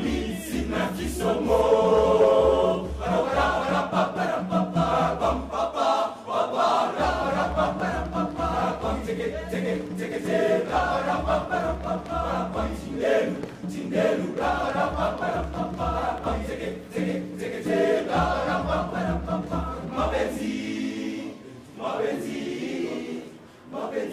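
Boys' choir singing a Swahili song, many voices together. A steady low beat runs under the singing and stops a few seconds before the end.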